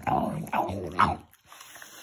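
French bulldog chewing an apple noisily, with a person laughing over it during the first second or so.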